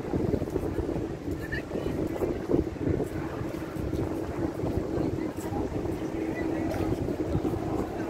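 Wind rumbling on the microphone over the chatter of a crowd of people talking.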